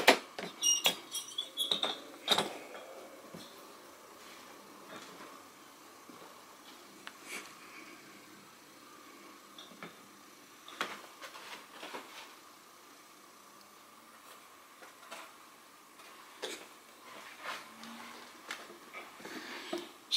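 Plastic Kennel Cab pet carrier being handled: a cluster of sharp clicks and rattles from its wire door and latch in the first couple of seconds, then scattered single clicks and light knocks over a faint quiet room.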